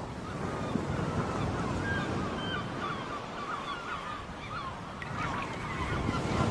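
Ocean surf washing steadily, with birds calling over it in many short, wavering cries.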